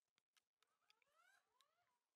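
Near silence: room tone with a few very faint clicks and a faint squeak.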